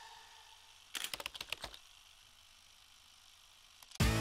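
A quick rattle of about ten sharp clicks, starting about a second in and over in under a second, like a transition sound effect on a title card. Otherwise near silence, with a faint tone fading away at the start.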